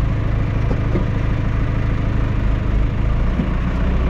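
Green John Deere farm tractor's engine running steadily, heard from inside the cab as a loud, even hum.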